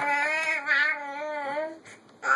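Baby vocalizing in one long, wavering, sing-song tone that trails off shortly before the end.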